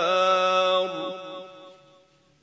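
A male Quran reciter's voice holding the drawn-out closing note of a melodic recitation phrase. It steadies, drops away about a second in, and trails off to near silence.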